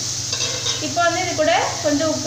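Chopped radish, garlic and curry leaves sizzling in a metal kadai as they are stirred, a steady frying hiss. A voice speaks over it from about a second in.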